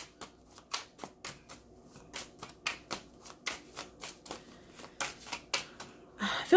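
A tarot deck being shuffled by hand: a continuous run of short card clicks and slaps, several each second.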